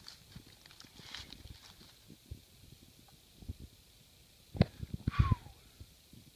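Faint rustling and crackling of dry leaf litter as someone shifts on the forest floor, with a few sharper knocks about four and a half and five seconds in and a short falling chirp just after them.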